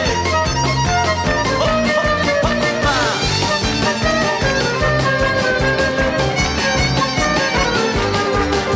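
Live Roma band playing an instrumental passage: a violin leads a fast melody over acoustic guitar, a bass line and a steady beat, with a quick slide down in pitch about three seconds in.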